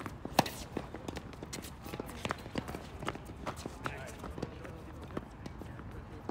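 Tennis ball struck by rackets and bouncing on a hard court during a doubles point: a loud serve hit about half a second in, then a string of sharp hits and bounces, with shoes scuffing on the court.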